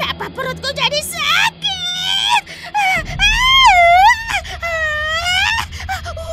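A cartoon witch's voice wailing and moaning: short broken cries at first, then from about halfway on long wavering wails that sweep up and down in pitch, as she suffers from the poisoned fruit she ate. Background music plays underneath.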